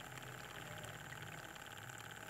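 Faint, steady running of a small homemade DC-motor water pump. It runs quietly, which is how it sounds once primed and lifting water.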